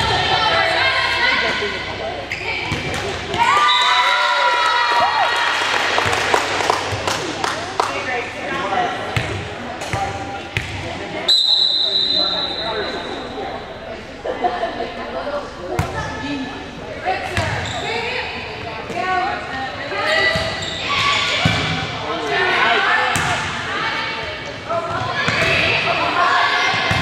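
Volleyball rally: the ball slapping off players' hands and thudding on the floor, with players and spectators shouting and cheering. A referee's whistle is blown once, a steady shrill tone of about a second, roughly eleven seconds in.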